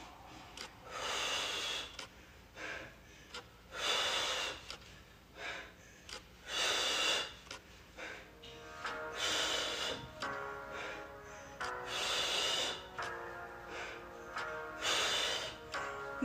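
A woman breathing hard from exertion during slow leg raises, with a sharp, hissy exhale about every three seconds and softer breaths between.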